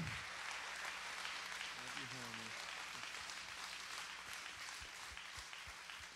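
An audience applauding: a fairly quiet, even patter of many hands clapping that dies away near the end, with a brief faint voice about two seconds in.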